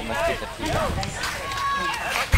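Indistinct talking by people, voices going on throughout.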